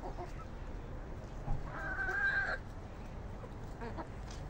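A chicken gives one drawn-out call of under a second, a little under two seconds in.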